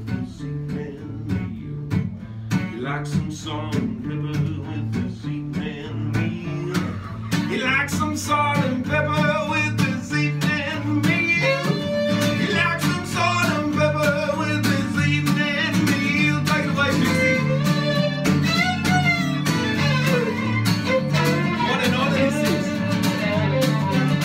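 Acoustic guitar strummed in a country-style tune. A fiddle comes in about seven seconds in and plays a wavering melody over the guitar, and the music grows fuller and louder.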